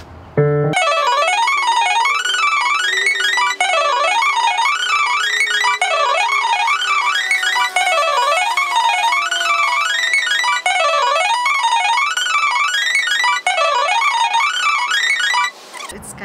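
Nord digital piano playing a fast étude passage: quick runs of notes rising and falling, the same figure repeated about every couple of seconds, over a long held lower note. The playing starts just under a second in and stops just before the end.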